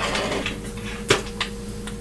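Hands handling a plastic headlamp and its strap on a workbench: a brief rustle, then a sharp click about a second in and a fainter one just after, over a steady low electrical hum.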